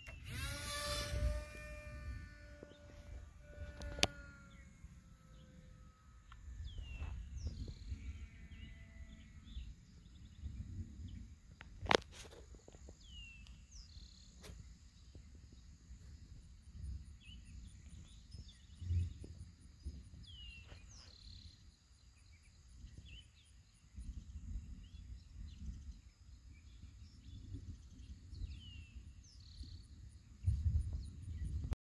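Small capacitor-powered electric motor and propeller of a free-flight model plane whining, its pitch falling steadily and fading out about nine seconds in. Short bird chirps repeat throughout over a low wind rumble, with a sharp click about twelve seconds in.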